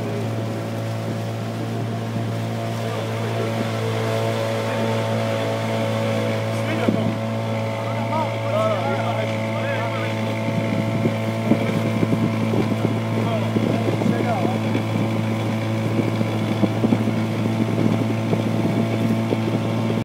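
Volvo Crescent 25 hp two-stroke outboard motor running at a steady cruising speed, pushing a small boat along, with water rushing past the hull.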